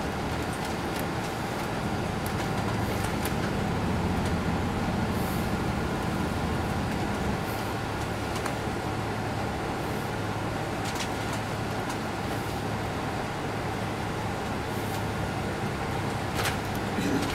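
Inside the cabin of a moving 2002 MCI D4000 coach: its Detroit Diesel Series 60 diesel engine running steadily under road noise, with scattered light rattles and clicks from the interior.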